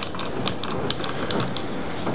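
Steam iron hissing steadily as it presses trousers through a linen press cloth.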